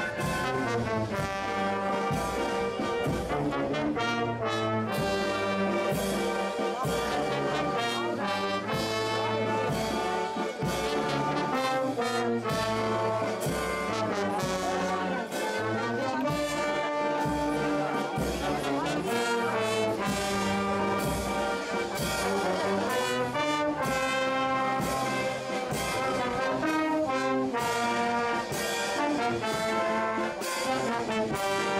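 Brass band music with trombones and trumpets, playing a tune over a steady, even march beat.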